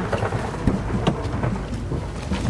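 Steady rain with a deep low rumble underneath, and two sharp clicks around the middle.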